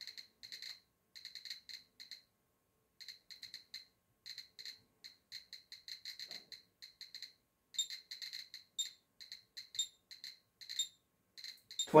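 Geiger counter beeping once for each count, short high beeps at irregular random intervals, a few a second, as it picks up radiation from uranium ore samples.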